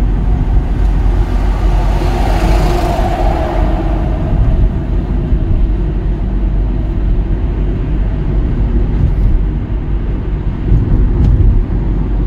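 Steady road and engine noise inside a Hyundai car's cabin while driving at city-road speed. A rushing swell comes in between about two and four seconds in.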